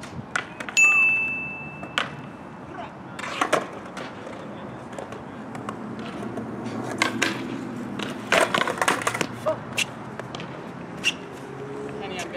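Skateboard wheels rolling on concrete and building up, then a cluster of clacks and a scrape as the board hits a steel handrail, leaving the board lying on the rail. Just under a second in there is a sharp knock with a high ringing tone that lasts about two seconds.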